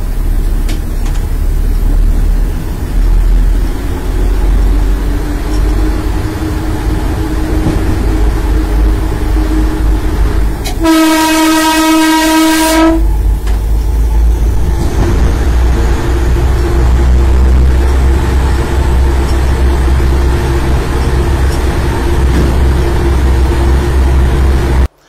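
Train running through a tunnel with a steady low rumble, and one horn blast of about two seconds midway.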